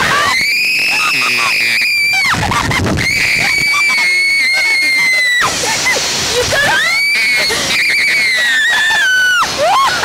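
Two girls screaming on a slingshot reverse-bungee thrill ride as it launches and tumbles them. There are three long, high screams of two to three seconds each, and the last one slides down in pitch near its end.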